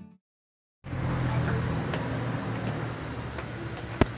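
Background music stops, then after a brief gap of dead silence there is steady outdoor urban background noise with a low rumble and a few faint taps.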